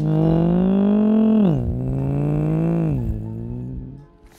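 Motorbike engine sound, a loud buzzing drone that holds its pitch, drops sharply about one and a half seconds in, then holds lower and drops again near the end, like an engine changing gear.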